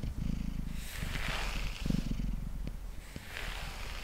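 Domestic cat purring steadily, close to the microphone. Two soft swishes of a pet brush drawn through its fur come about a second in and again near the end.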